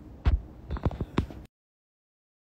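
Handling noise from a smartphone held in the hand: a low thump, then several lighter knocks and taps, before the audio cuts off dead about one and a half seconds in as the live stream is ended.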